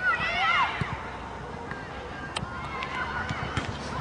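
Distant shouted voices on a football pitch in the first second, then open-air background with a few faint sharp knocks.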